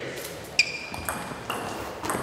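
Table tennis ball being hit in a rally: three quick hollow clicks off bat and table about half a second apart, the first the loudest with a short ringing ping.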